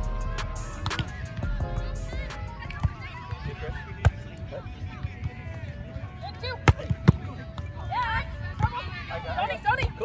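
Volleyball being played: several sharp smacks of hands and forearms on the ball, the loudest two close together about seven seconds in. Music fades out over the first couple of seconds, and players call out near the end.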